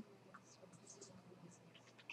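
Near silence: classroom room tone with faint, scattered small clicks and rustles.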